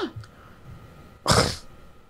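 A person's short, sharp breathy huff, a little past halfway, in disgusted reaction to the question just asked; otherwise quiet studio room tone.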